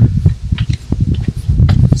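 Hands pressing and patting a rubber cargo-area floor mat down in a car's trunk, giving a few soft taps over a loud low rumble.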